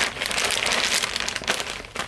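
Clear plastic bags crinkling and rustling as they are handled and pulled open, a dense run of small crackles that eases off just before the end.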